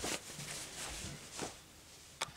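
Satin and Ankara cotton fabric rustling as hands turn a sewn bonnet right side out through its opening, with a faint tap at the start and another about one and a half seconds in.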